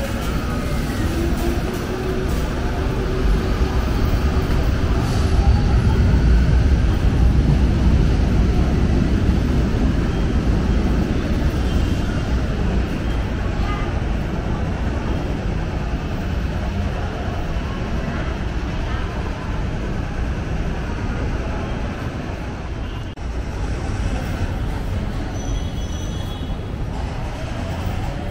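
An LRT Line 1 light-rail train pulling out of an elevated station: a low rumble that swells over the first several seconds and then slowly fades as the train moves off, with a short rising whine near the start.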